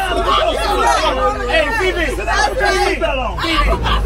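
Several voices talking over one another in lively chatter, with a steady low rumble underneath.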